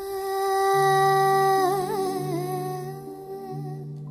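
A woman hums one long wordless held note, with a brief wavering ornament in the middle, over low sustained notes from a Roland electronic keyboard that come in about a second in.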